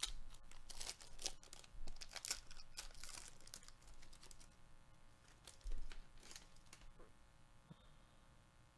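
Baseball card pack wrapper torn open and crinkled by hand: a run of quick crackles and rustles, densest in the first half, then fainter rustling as the stack of cards is slid out of the wrapper.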